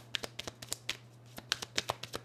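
A deck of oracle cards being shuffled by hand: a rapid, irregular run of sharp card clicks and slaps, coming thicker in the second second.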